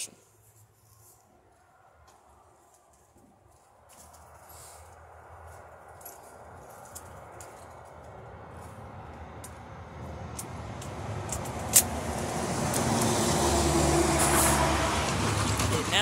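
A motor vehicle approaching, its engine and road noise growing steadily louder over about ten seconds and loudest near the end. A single sharp click sounds partway through.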